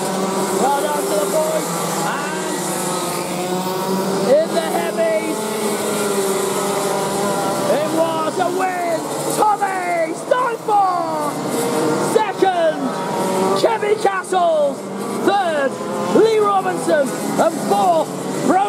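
Several 125cc two-stroke TAG kart engines running on track. From about eight seconds in, their pitch falls over and over in short, overlapping glides as individual karts come off the throttle or go by.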